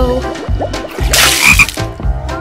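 Water gurgling down a pool drain in low, repeated glugs, with a hissing rush about a second in as the last of it is sucked away.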